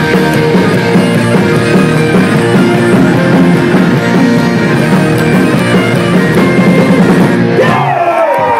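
Live Celtic folk-rock band playing loudly: bagpipes with steady drones, fiddle and acoustic guitar over a rock beat. The tune ends just before the end.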